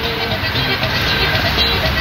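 Steady road and traffic noise heard from inside a car's cabin.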